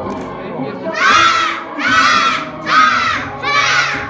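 A group of young children shouting together in unison, four short kung fu shouts timed with their punches, the first about a second in and then roughly one a second.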